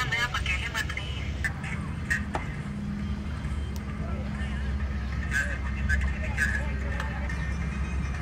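Distant shouts and calls of players on an open field over a steady low rumble, with a few short sharp knocks early on.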